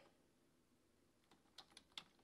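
Faint computer keyboard keystrokes: a few separate taps in the second half, over near silence.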